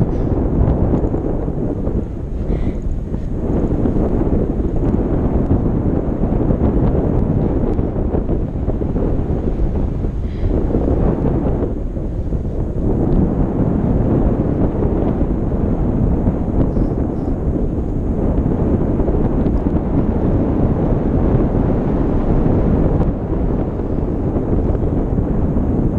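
Wind rushing over an action camera's microphone in flight on a tandem paraglider: a loud, steady low rumble that swells and dips slightly.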